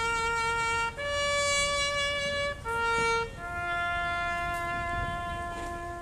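A solo trumpet plays a slow call in long held notes that climb and fall through a major chord. A long note is followed by a higher one, then a short return to the first, then a long, lower note that ends near the close.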